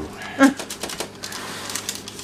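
Light, irregular clicking and tapping of kitchen handling, with a brief voiced sound about half a second in.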